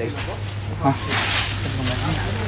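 Thin plastic produce bag holding cucumbers rustling and crinkling as it is handled, starting about a second in, over a steady low hum.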